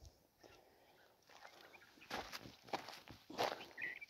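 Footsteps on dry, cracked soil, about four soft steps spaced roughly half a second to a second apart after the first second.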